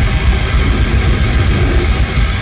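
A grindcore band playing loud, distorted live music: heavy guitars and bass over fast, dense drumming without a break.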